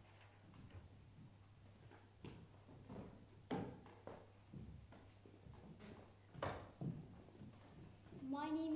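Near silence in a hall with a steady low hum, broken by a few soft knocks and shuffling footsteps as people move about between performances; the sharpest knock comes about six and a half seconds in.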